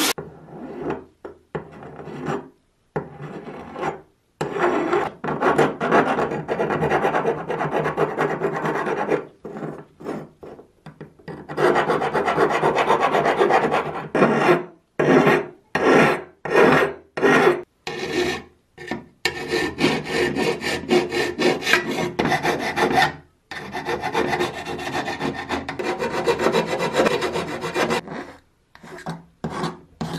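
A hand file, and before it a sheet of abrasive paper, rasping against metal oil-lamp parts as they are smoothed by hand. It comes in runs of back-and-forth strokes broken by short pauses, with separate, loud strokes about halfway through.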